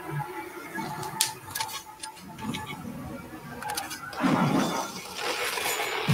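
Battle sound effects from an animated fight between a scythe and a rapier: sharp metallic clinks and hits about a second in, then a loud rushing noise from about four seconds in.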